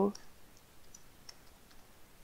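Faint, scattered computer-keyboard keystrokes, a few separate clicks, as code is typed.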